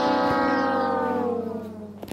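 A long brass note, trombone-like, held and sliding slowly down in pitch as it fades. It is the drawn-out final note of a comic descending brass sting laid over the video.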